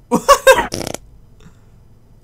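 A man's short burst of laughter: about four quick, loud pulses of laughing packed into the first second.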